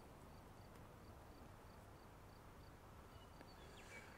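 Near silence: faint outdoor background with a faint, high, regular tick about three times a second.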